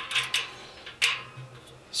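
A few short metallic clicks and scrapes as an Allen wrench works the stainless steel fitting of a BoilCoil electric heating element inside a steel brew kettle, one sharper click about a second in.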